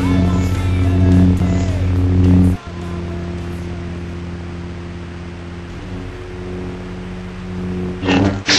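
Lightsaber hum sound effect: a steady, low electric hum. About two and a half seconds in it cuts off sharply and a quieter, slightly different hum takes over.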